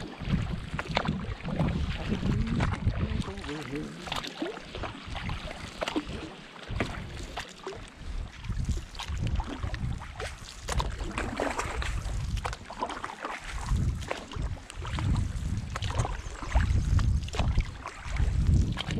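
Canoe paddling on a lake: the paddle dipping and pulling through the water with small splashes and knocks against the hull, under a gusty low rumble of wind on the microphone.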